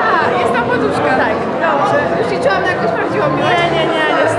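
Chatter of several young women's voices talking over one another.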